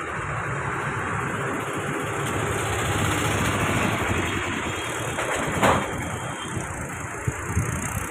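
Road traffic passing close by, heavy trucks and cars on a highway, a steady engine and tyre noise that swells gently in the middle, with a brief louder burst about six seconds in.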